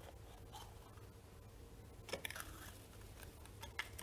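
Faint clicks and rustling as a plastic draw ball is twisted open and the rolled paper slip inside is pulled out and unrolled. The sharpest clicks come about two seconds in and again near the end.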